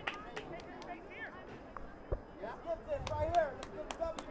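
Scattered voices of players and spectators calling out across the field, with a few light knocks.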